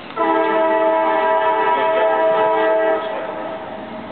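A train horn sounding one long, steady blast of several pitches at once, starting just after the beginning and cutting off about three seconds in.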